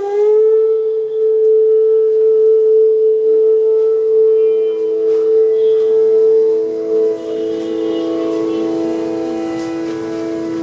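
Bansuri (bamboo flute) playing raag alap: a note slides up and settles into a long, steady held tone. About three seconds in, a second flute enters on a lower sustained note beneath it, and the two notes hold together without percussion.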